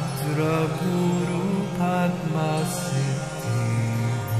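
A voice chanting a mantra in slow, gliding sung phrases over a steady drone, as background devotional music.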